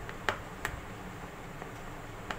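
Two light clicks of a silicone spatula against a plastic mixing bowl while flour is folded into cake batter by hand, over a low steady background hum.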